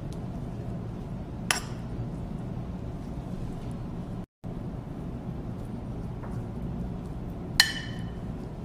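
A serving spoon knocking on a metal pan or tray while chicken filling is spooned over the pasta layer: a light clink about a second and a half in and a louder, ringing clink near the end, over a steady low kitchen hum. The sound drops out briefly near the middle.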